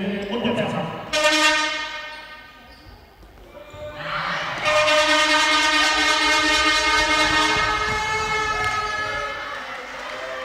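Two horn blasts in a sports hall. The first begins about a second in and fades within a second or so. The second starts about four and a half seconds in and is held for about five seconds, slowly fading.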